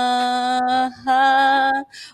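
A woman singing a Tagalog Christian song unaccompanied, holding a long steady note, breaking off briefly about a second in, then holding a second, slightly higher note that stops just before the end.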